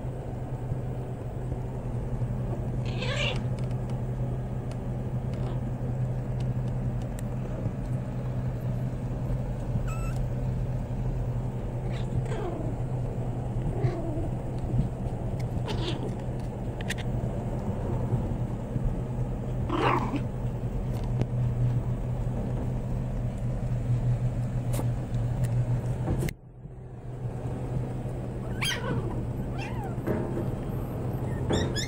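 Young puppies whimpering and squeaking: several short, high-pitched cries spaced out over a steady low hum.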